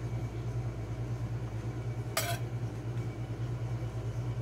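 A metal spatula clinks once against a ceramic plate about two seconds in, over a steady low hum.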